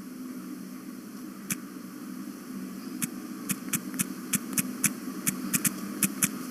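Low steady electrical hum with a run of about a dozen light clicks, one about a second and a half in and then about three a second in the second half, like keys being pressed while text is typed.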